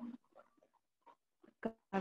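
Two short, sharp animal calls about one and a half seconds in, with faint short sounds before them.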